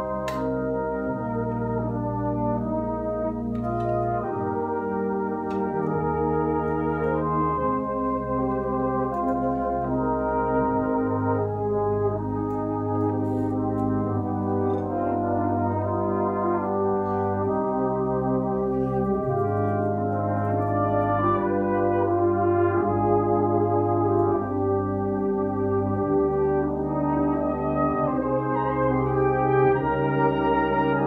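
A full brass band (cornets, horns, euphoniums, trombones and tubas) playing slow, held chords that change every second or two over deep bass notes, swelling gradually louder.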